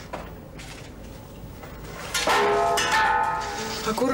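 Glass bottles and vials clinking together at a medicine cabinet: a few sharp clinks with ringing tones, starting suddenly about two seconds in, after a quieter stretch.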